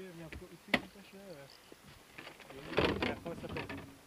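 Men's voices talking quietly, with a single sharp click about three-quarters of a second in and a short burst of noise near three seconds.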